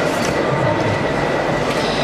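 A loud, steady rushing noise with no clear pitch or rhythm.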